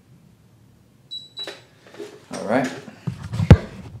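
A digital body-fat scale gives one short, high-pitched beep as it finishes its reading. A sharp knock follows near the end.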